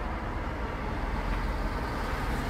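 A car driving past on the street, a steady rumble of engine and tyres.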